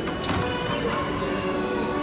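Background music with held, steady tones.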